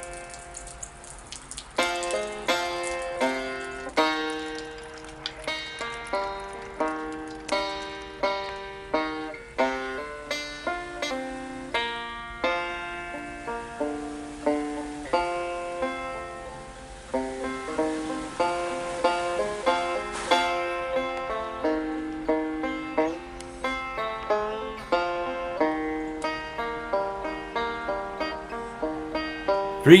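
Banjo music: a picked tune of quick plucked notes, each ringing and fading.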